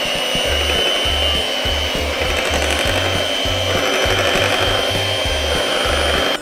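Electric hand mixer running on its slow setting, its motor giving a steady whine as the twin beaters churn chocolate cake batter in a glass bowl.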